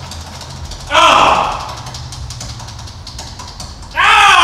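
Spinning tabletop prize wheel, its pointer ticking rapidly over the pegs and slowing as the wheel winds down. About a second in, a person gives a loud whoop that falls in pitch.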